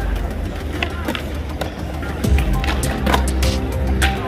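Skateboard wheels rolling on concrete with a low rumble that grows louder about halfway through. Several sharp clacks of boards hitting the ground come through it, with music playing in the background.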